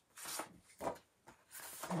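Thin printed paper rustling and sliding against a paper trimmer as the sheet is handled, in a few short brushes.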